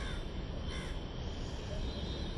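A crow cawing, short calls near the start and again just before one second in, over a steady low outdoor rumble.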